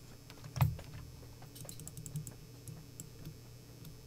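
Light clicks of a computer keyboard and mouse: one sharp click about half a second in, then a quick run of small ticks, over a low steady hum.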